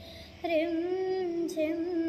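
A young woman singing solo with no accompaniment. After a brief pause at the start, she sings long held notes with a slight waver in pitch.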